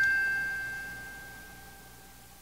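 A struck bell-like chime note ringing out, one high tone fading away steadily over about two seconds: the tail of a short chime jingle.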